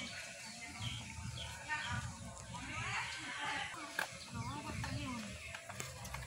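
Faint, distant voices talking, too low for the words to come through.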